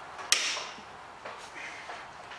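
A brake caliper bolt cracking loose under a hand tool: one sharp crack about a third of a second in as the seized bolt breaks free, followed by a few faint knocks of the tool.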